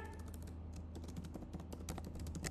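Fast typing on a computer keyboard: a quick, irregular run of light keystrokes, faint.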